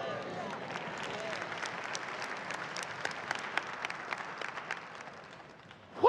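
Congregation applauding: a dense patter of many hands clapping that thins out and dies away near the end.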